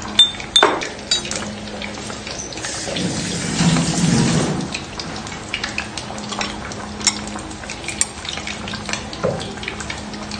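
Metal spoon clinking against ceramic bowls and a mug while a vinegar dipping sauce is mixed, with scattered sharp clinks. A brief rushing swell comes about three to four seconds in, over a steady low hum.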